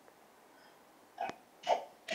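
Near-quiet room tone broken in the second half by a click and two brief voice fragments: a phone-in caller's voice cutting in and out on a breaking line.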